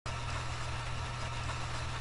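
Steady low hum with an even hiss, the background noise of the recording, unchanging throughout.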